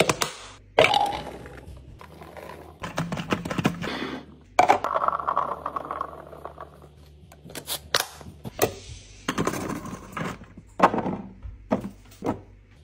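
Sharp plastic clicks and snaps as a container lid is pressed shut. Near the middle comes a rattling patter of blueberries tumbling from a plastic colander into a clear plastic container.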